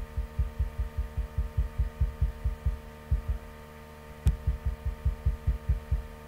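Computer mouse scroll wheel being turned, its notches picked up by the microphone as a rapid run of low thumps, about five a second, in two runs with a pause of about a second between them. A sharp click starts the second run, and a steady mains hum runs underneath.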